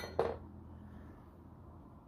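Faint handling of a small aluminum bracket: a light clink or two near the start, then only a low steady background hum.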